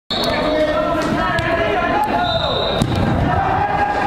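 A football being kicked and bouncing, with a handful of sharp knocks spread through, amid players' shouts echoing in a large indoor hall.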